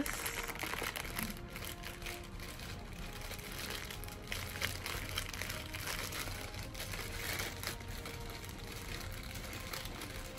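Clear plastic packaging bag crinkling and rustling irregularly as hands work a figure part out of it.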